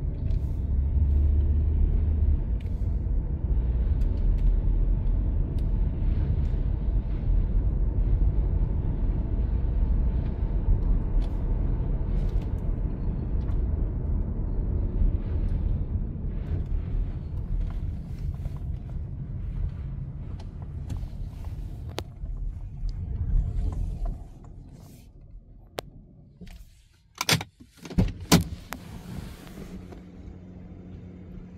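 Cabin sound of a Hyundai Sonata Hybrid driving slowly: a steady low rumble that fades away about three-quarters of the way through. A few sharp knocks follow near the end.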